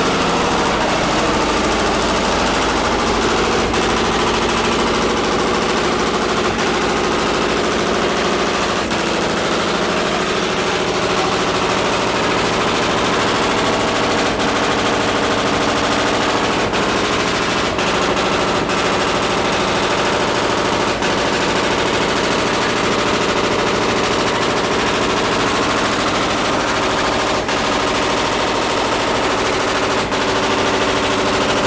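Loud machinery in a cricket bat workshop running steadily, a dense rattling machine noise with a constant hum that does not let up.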